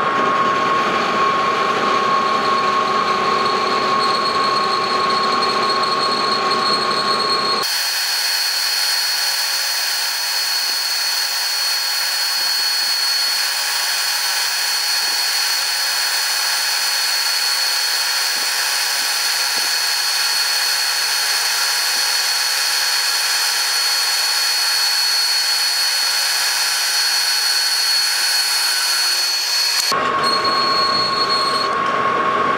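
Metal lathe turning a cast iron flat belt pulley while a boring bar cuts the hub bore, a steady cut with a thin high ringing tone over the machine noise. About eight seconds in the sound changes abruptly: the low rumble drops away and the high tone grows stronger.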